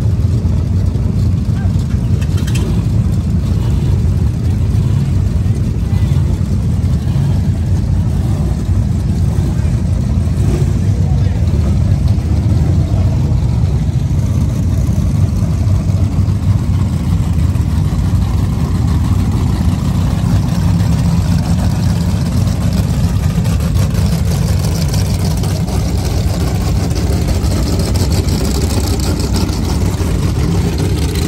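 Rock bouncer buggy engines idling, a loud, steady low rumble.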